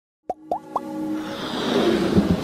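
Three quick rising plop sound effects in a row, followed by a swelling whoosh that builds into electronic music: an animated logo intro sting.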